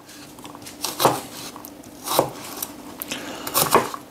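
Chef's knife chopping onion on a plastic cutting board: four sharp knocks of the blade on the board, spaced about a second apart, the last two close together.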